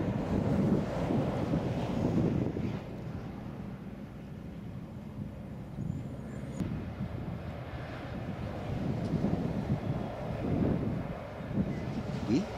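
Wind buffeting the microphone in gusts, a low fluctuating rumble, over a faint steady hum of distant engines.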